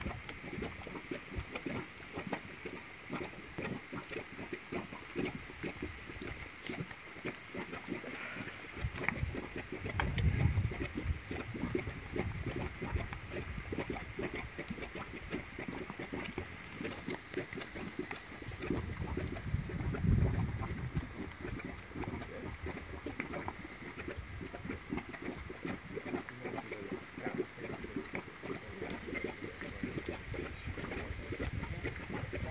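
Hot-spring mudpot bubbling: thick mud popping and plopping in quick, irregular blips, with two louder low surges about ten seconds apart.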